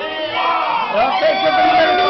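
A room full of people singing together loudly, many voices overlapping in a shouted sing-along.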